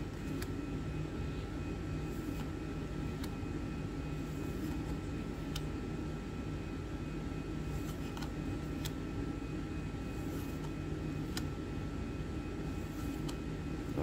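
Steady mechanical hum filling the room, with faint, occasional clicks as Magic: The Gathering cards are slid off a stack by hand and laid on a pile.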